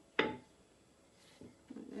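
Faint rubbing of a wooden rolling pin rolling dough on a floured mat, mostly quiet, with a sharp knock-like onset near the start.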